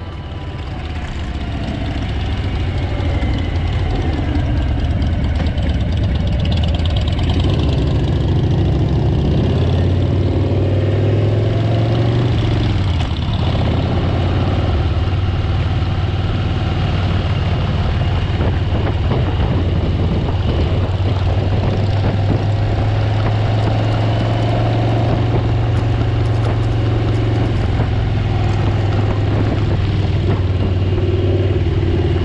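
Motorcycle engine running steadily at cruising speed, heard from on board the riding bike, with wind rush over it. It fades in over the first couple of seconds, and the engine note dips briefly about halfway through, as with a gear change or throttle lift.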